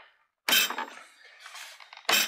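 Plastic body shell of a Husqvarna 450XH Automower snapping down onto one of its joysticks, a sharp pop about half a second in and then a fainter click; a single clean pop is the sign of a sound snap-lock cap seating the body properly.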